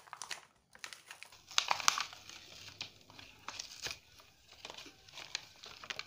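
Clear plastic blister packaging of a toy makeup set crinkling and crackling as it is handled and pulled open, with the loudest crackles about two seconds in.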